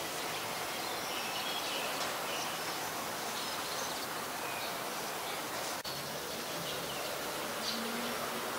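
Oriental magpie-robin singing faint, short, scattered whistled notes over a steady hissing drone that sounds like insects. There is a brief dropout about six seconds in.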